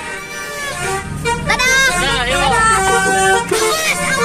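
Basuri 'telolet' multi-tone horn playing a short tune: several notes sounding together and stepping from pitch to pitch, starting about a second in and stopping shortly before the end. Children's excited voices sound over it.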